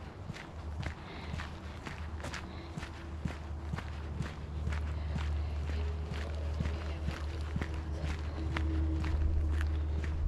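Footsteps crunching on a dirt and gravel trail at a steady walking pace, a few steps a second. A low steady rumble runs underneath, louder in the second half.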